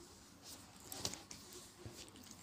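Faint rustling and a few soft clicks as a hand handles a cat's fur close to the microphone.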